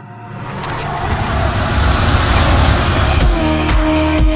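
A whoosh of noise that swells up out of silence and builds, leading into an electronic music ident. About three seconds in, a pulsing beat with sustained tones starts.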